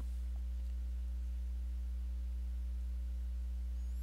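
Steady low electrical hum with a few faint higher overtones, typical of mains hum picked up in the recording chain.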